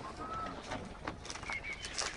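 Faint bird calls during a quiet moment: one short whistled note, then two brief higher notes about a second later.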